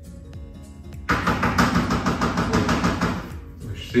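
A fast run of knocks on a door, lasting about two seconds and starting about a second in.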